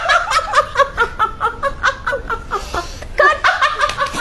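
A person laughing in a quick run of 'ha-ha' pulses, about four or five a second, with a breath drawn about two and a half seconds in before the laughter starts again.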